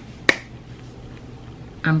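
A single sharp finger snap about a quarter of a second in.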